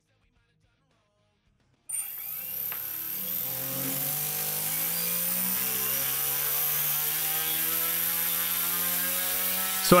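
Silence for about two seconds, then a DualSky XM4010 brushless outrunner motor driving an 11-inch propeller cuts in at low throttle. It gives a steady whirring hum with a high whine, and its pitch creeps slowly upward as the throttle is eased up.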